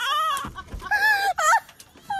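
High-pitched shrieks from a person's voice: two or three short cries that rise and fall in pitch, as a rider tipping off a small tricycle into a swimming pool.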